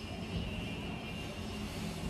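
Steady low hum of city street background, with a faint thin high whine running through it.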